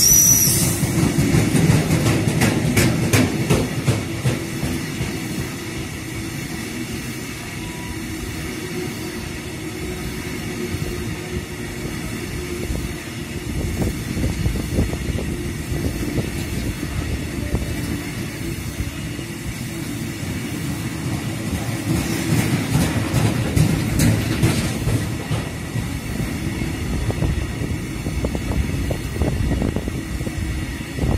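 Freight train of Ermewa covered hopper wagons rolling past: a steady rumble of wheels on rail, with clusters of clacks from the bogies crossing rail joints in the first few seconds and again past two-thirds of the way through. A brief high wheel squeal comes right at the start.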